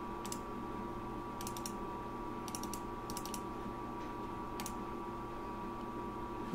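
Computer mouse clicks, some single and some in quick runs of two or three, over a faint steady electrical hum.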